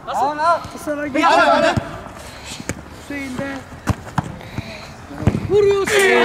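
Men shouting during a football game, with about four sharp thuds of a football being kicked.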